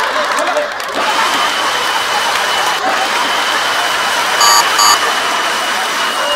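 High-pressure water cannons blasting spray, a steady dense rush of water. Two short electronic beeps sound close together a little past the middle.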